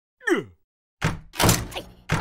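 Cartoon sound effects: a short pitched sound sliding steeply down, then from about a second in a run of heavy thunks and clatter.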